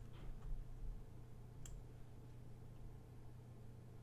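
Faint room tone with a steady low hum, broken by a few soft computer-mouse clicks, one near the start and one about one and a half seconds in.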